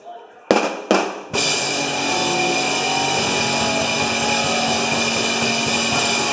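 Live pop-punk band starting a song: two loud hits about half a second apart, then the full band comes in loud with drums, electric guitars and bass.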